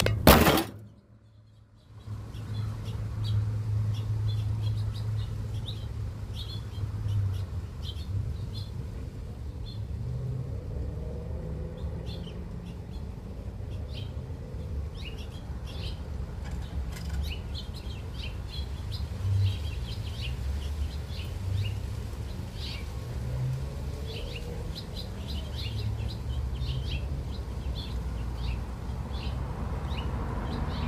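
A loud clatter as the feeder camera is knocked over and falls, followed by a brief dropout; then small birds chirp in short, scattered calls throughout, over a steady low rumble.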